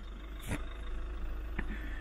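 Engine of a Foton-based camper van running at low revs as it creeps forward at walking pace, a steady low rumble with a short light knock about half a second in.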